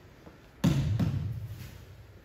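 Two dull thuds on the padded dojo mat during an aikido pin, the first and louder about half a second in, the second about a third of a second later, both fading quickly.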